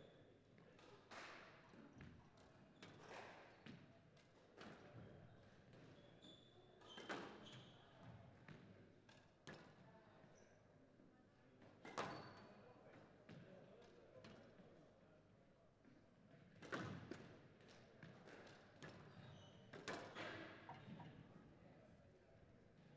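Faint, irregular knocks and thuds of players, racquets and ball on a squash court, spaced every second or two and echoing in a large hall, with a few short squeaks.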